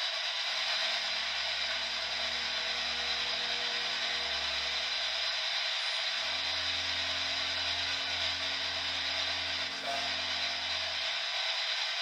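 A steady hiss of static with a low, sustained musical drone beneath it. The drone is held in two long notes or chords, the second starting about halfway through and stopping shortly before the end.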